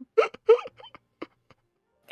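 A person's voice making two short, drawn-out vocal sounds that slide up and down in pitch, in the manner of a mock wail or laugh, followed by a few faint clicks.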